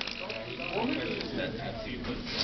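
Small electric motors and plastic gears of a fischertechnik marble-sorting machine running, with a click right at the start.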